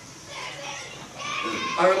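Faint background voices during a pause in the talk, growing a little louder, then a man starts speaking near the end.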